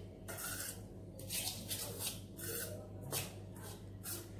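Metal spoon stirring powdery roasted gram flour and ghee in a stainless steel bowl: repeated scraping strokes against the bowl, about two a second, over a faint steady hum.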